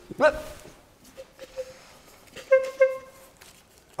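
Bulb horn, a red rubber bulb on a metal horn, squeezed: a couple of faint short toots, then two louder short honks about a third of a second apart a little past halfway.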